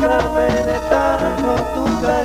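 A live grupero band playing, with keyboards and a steady drum beat under the lead singers' voices.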